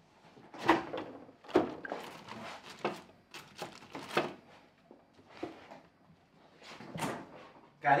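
Kitchen handling sounds at a refrigerator: the door opening and food being taken out, a series of sharp knocks and clatters, the loudest two in the first two seconds.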